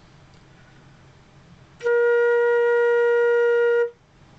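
A flute plays a single held B-flat (just above middle C's octave, about 466 Hz) at a steady pitch for about two seconds, starting about two seconds in after a quiet pause and stopping cleanly just before the end.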